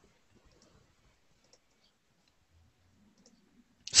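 Near silence on a video call, broken by a few faint, scattered clicks; a voice comes in right at the end.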